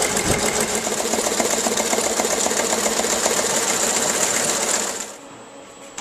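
A small machine running with a fast, even mechanical clatter that stops suddenly near the end, leaving a few faint clicks.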